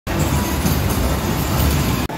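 Kiddie dragon roller coaster cars running along their steel track: a loud, steady rumble of wheels on rails.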